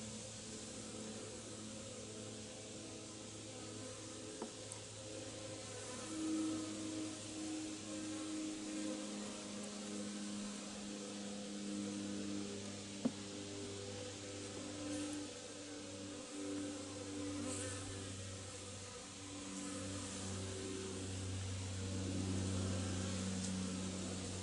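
Honeybees buzzing around an open top-bar hive: a steady low hum of many bees, with single bees' buzzing tones rising and falling as they fly close to the microphone. One sharp click about halfway through.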